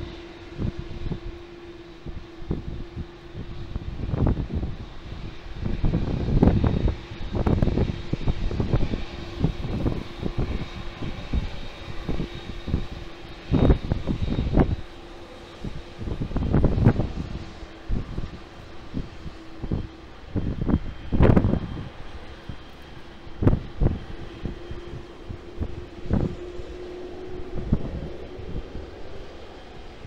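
Taxiing twin-engine jet airliners at low idle thrust: a steady engine hum with a faint high whine. Irregular gusts of wind buffet the microphone throughout and are the loudest sound.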